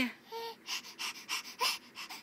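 Baby giggling in quick breathy huffs, about four or five a second, after a brief voiced squeak near the start.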